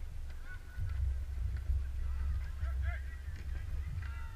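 Distant shouting from players and spectators: short calls that rise and fall in pitch, coming more often in the second half, over a low wind rumble on the microphone.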